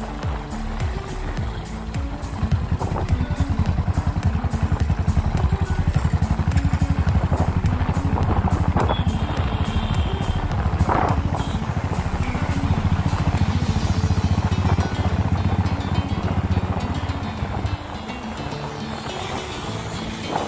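Royal Enfield Thunderbird 500's single-cylinder engine running while the bike is ridden, its exhaust pulses heard from on board, with background music over it. The engine sound grows louder about two seconds in and drops back near the end.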